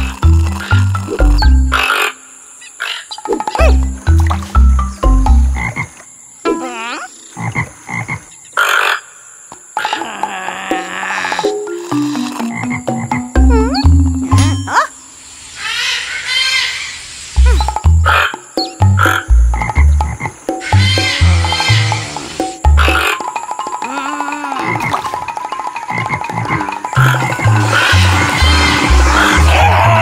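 Cartoon soundtrack of low, rhythmic frog croaks stepping up and down in pitch, with whistling glides and chirps over them and a fast buzzing trill in the second half.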